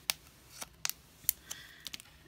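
A small clear plastic bag crinkling in the fingers as it is folded shut around leftover air dry clay: about six sharp crackles, spaced irregularly.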